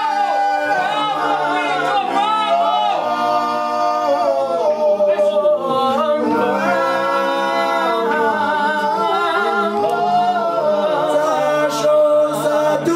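A group of men singing a gwijo chant a cappella in harmony, several voices holding long notes together and moving to a new chord every second or two.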